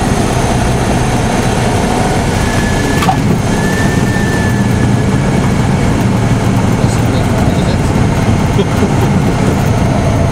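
Single-engine light aircraft's engine and airflow heard in the cockpit while landing: a loud, steady drone. A thin high tone sounds for about two seconds around three seconds in.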